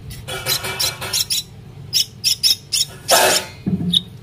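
Common myna chick giving a series of short, harsh, rasping begging calls, with a longer, louder call about three seconds in.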